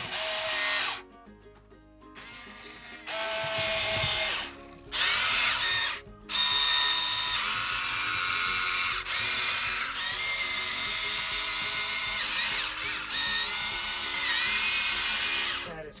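Huina 1592 RC excavator's small electric motors and gearboxes whining as the boom, arm, bucket and turntable are driven. The whine wavers and glides in pitch as the motors speed up and slow, in several runs with short pauses in the first six seconds, then runs on almost unbroken.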